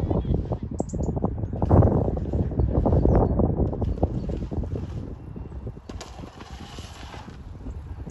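Wind buffeting the recording phone's microphone outdoors: an irregular, gusty rumble with many small knocks, easing off about five seconds in.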